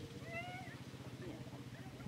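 Steady low hum of an idling quad bike engine, with one short, high, rising-then-falling whine about half a second in.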